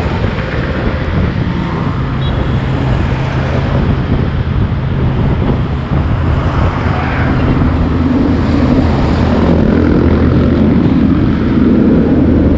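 Motorcycle engine running steadily at riding speed, with wind noise on the microphone and road traffic around it. A heavier engine drone grows louder through the second half as a truck draws alongside.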